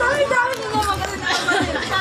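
Several people talking at once in overlapping, unclear chatter.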